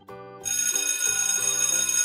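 Alarm-clock ringing sound effect, starting about half a second in and ringing steadily, marking that the countdown has run out. Light background music plays underneath.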